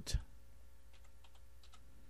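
Typing on a computer keyboard: a run of faint, separate keystrokes starting about half a second in.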